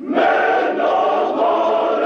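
Male choir singing in held notes, coming in suddenly after a brief lull.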